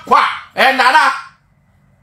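A man's loud wordless vocal outburst: two short cries with bending pitch in the first second and a bit, then a silent pause.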